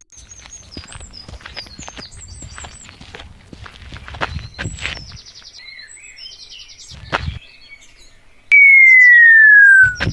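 Sound effects of an animated forest scene: birds chirping over footsteps for the first five seconds, a single thud about seven seconds in, then a loud whistle tone sliding steadily down in pitch for about a second and a half near the end.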